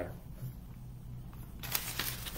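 Felt-tip highlighter writing on a paper pad: after a quiet stretch, a run of short scratchy strokes starts near the end.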